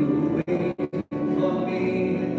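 A singer performing live with musical accompaniment, holding sustained notes. The sound cuts out briefly three or four times just before the middle.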